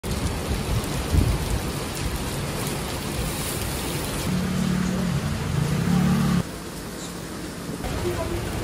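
Heavy rain pouring down on a street, with car tyres hissing on the wet road. A vehicle's low engine drone comes through in the middle, then the sound drops suddenly about six and a half seconds in.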